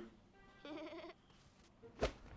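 A short, faint, quavering bleat-like call of about half a second, starting about half a second in.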